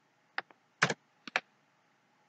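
A handful of short, sharp computer key clicks, spread over about a second, as the slideshow is advanced to the next slide.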